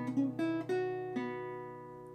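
Acoustic guitar holding a B7 chord with its bass note ringing while single notes are picked on the top two strings, a few in the first second or so; then the chord rings on and fades.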